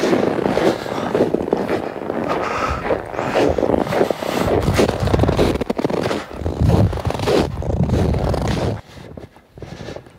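Boots crunching and squeaking step after step in dry, bitterly cold snow close to the microphone, dropping away about nine seconds in. The squeak is the sign of the extreme cold, about −25°.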